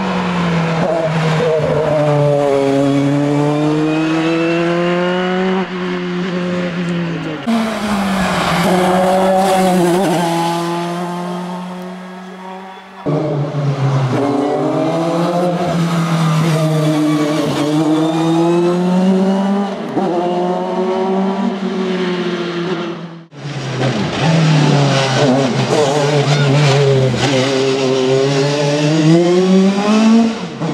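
Two-litre four-cylinder engine of a Dallara F301 Formula 3 single-seater at full race revs, its pitch repeatedly climbing and dipping as it accelerates and lifts. It is heard in several passes spliced together, with one pass fading away about halfway through.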